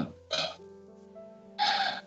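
Two short, breathy throat sounds from a man pausing in his speech, a brief one near the start and a louder one just past halfway, like a throat clearing or sharp breath. Faint background music with sustained notes runs under them.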